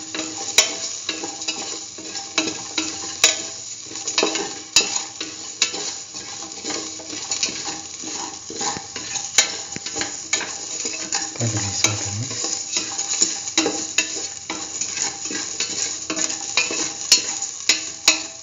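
Shallots, garlic and spice seeds frying in oil in a stainless steel pan, a steady sizzle with the utensil scraping and clicking against the steel at irregular moments as they are stirred.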